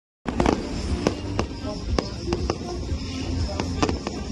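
Fireworks going off in several sharp bangs at irregular intervals, over music and a steady low rumble.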